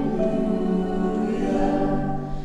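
Slow choral singing with long held notes, in the style of a worship hymn.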